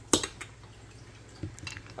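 A few faint clicks and taps of hard plastic toy shapes being handled against a plastic shape-sorter cube, with one sharper click just after the start.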